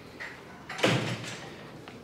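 A door shutting once, a little under a second in, with a short decay.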